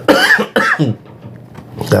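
A man coughing into his fist, two coughs in the first second.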